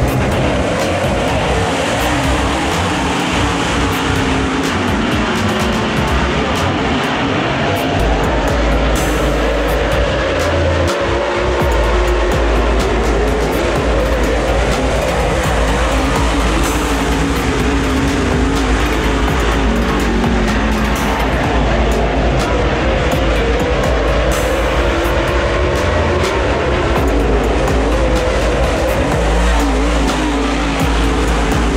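A pack of dirt super late model race cars running on a dirt oval, their V8 engines going round the track together, with background music laid underneath.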